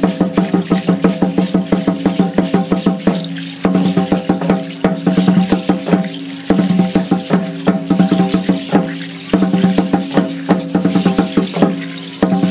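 Ceremonial dance drumming: a deep, ringing drum struck in a rapid, steady roll with the shake of the dancers' seed-pod ankle rattles, breaking off for a moment about every three seconds.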